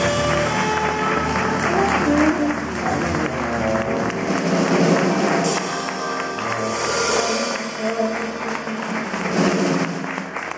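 Live jazz quartet playing, with saxophone, upright double bass, drum kit and keyboard, while audience applause mixes in over the music.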